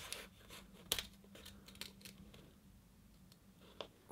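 Small scissors snipping through frisket paper: a few faint snips in the first two seconds, then a quieter stretch with one more click near the end.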